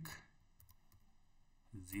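A few faint keystrokes on a computer keyboard, typed between two spoken words.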